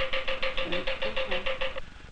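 A laboratory vacuum pump running with a steady hum and rapid even pulsing, about ten a second. It cuts off suddenly near the end.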